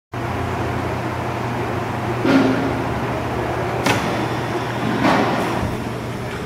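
A Rousselle No. 2 15-ton open-back inclinable mechanical punch press running idle, its electric motor and flywheel turning with a steady, quiet hum. There is a sharp click about four seconds in.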